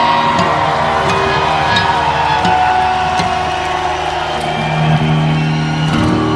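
Live rock band music: sustained electric guitar chords ringing out, with a short hit about every three-quarters of a second.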